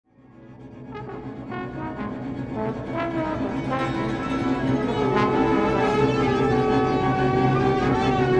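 Music: sustained trombone notes over a steady low drone, fading in from silence and growing louder over the first five seconds as new notes enter.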